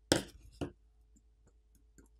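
Small phone parts being handled: a loud click with a short rattle just after the start and a second click about half a second later, then faint ticks, as the smartphone's subboard is worked loose and lifted out of its frame.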